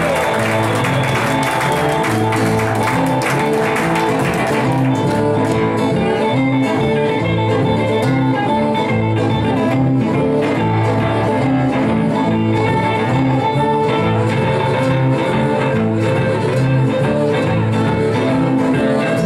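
Live blues played on acoustic and electric guitars, with a harmonica cupped against a vocal microphone, in a steady rhythm. Audience clapping sounds under the music in the first few seconds.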